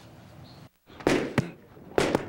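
Boxing gloves landing punches in a gym: a noisy smack about a second in, then sharp hits about half a second apart.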